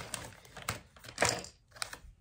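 A few light clicks and taps, about half a second apart, as a plastic phone clamp and mount are handled on a wooden tabletop.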